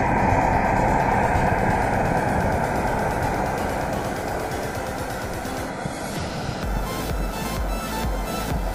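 Firework rocket burning with a steady rush of noise that slowly fades, under background music whose beat comes in strongly near the end.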